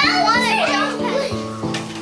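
Children's excited voices as they play, over background music with a steady beat.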